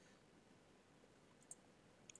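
Near silence, with one faint computer-mouse click about one and a half seconds in.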